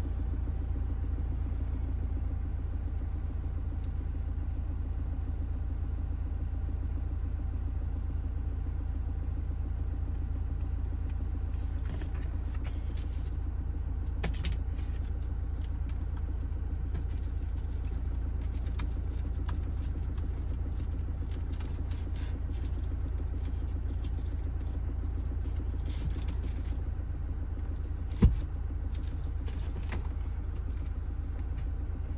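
Toyota Fortuner idling, heard inside the cabin as a steady low rumble. Faint scattered clicks run through the second half, with a single sharp knock about two seconds before the end.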